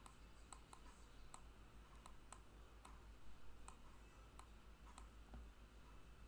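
Near silence with faint, sharp, irregular clicks, about three a second, from the input device as an answer is handwritten and boxed on a digital whiteboard.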